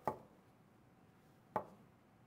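Two light knocks about a second and a half apart: a small earring display stand being set down and shifted on a hard desktop.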